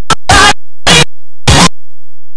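Broken-up, glitching playback of music from a corrupted video file: short loud chunks of distorted sound, each about a fifth of a second, cut off sharply by silent dropouts, roughly twice a second.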